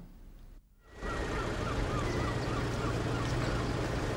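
A steady low engine drone, starting about a second in after a moment of near silence, with a few faint short chirps over it.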